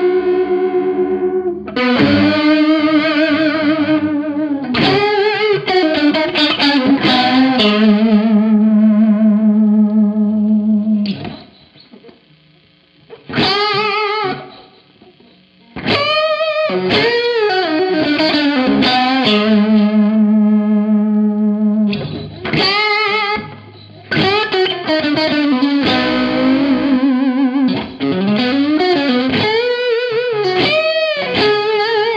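Electric guitar played through a NUX Reissue Series Analog Chorus pedal set for a vintage-style vibrato: the pitch of its held notes and chords wavers evenly. The playing drops quieter for a few seconds about midway.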